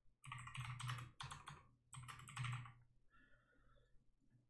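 Faint typing on a computer keyboard: two quick runs of keystrokes, each about a second long, with a short pause between.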